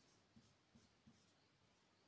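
Near silence, with a few faint, short taps of writing.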